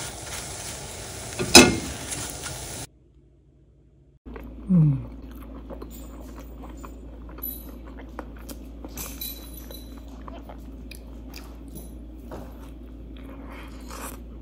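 Scrambled eggs with spinach sizzling in a nonstick frying pan, with one sharp knock of the spatula about a second and a half in. After a break, a short falling "mm" and a person chewing and biting into eggs on toast, with small crunches and mouth clicks.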